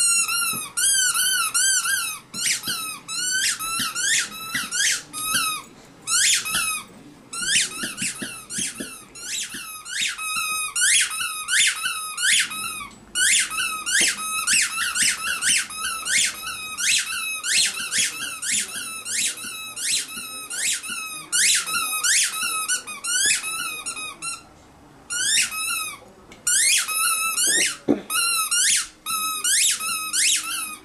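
Squeaky dog toy being chewed by a puppy: rapid, repeated high squeaks, about two or three a second, with a few short breaks.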